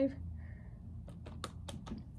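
Light, quick clicks and taps of plastic liquid-highlighter containers being handled and knocked together, a rapid run of them in the second half.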